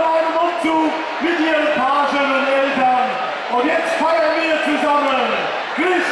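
A man talking loudly into a microphone over the tent's PA system, his voice raised and pitched high as in announcing.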